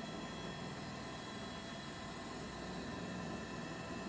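Faint steady hiss with a thin, even hum under it, unchanging throughout, with no distinct event.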